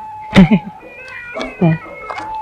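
Two short calls, each falling in pitch, about a second apart, over a steady held tone.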